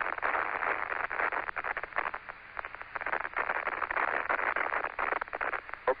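Crackling static and hiss on the Apollo 17 air-to-ground radio loop, thin and band-limited, thick with rapid clicks between radio calls during the lunar module ascent.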